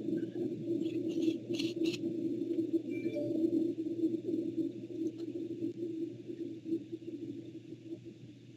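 A steady low droning hum with a rough texture, coming in at the very start, with a few short clicks about a second in. It is carried over a video call's audio, most likely from a participant's unmuted microphone.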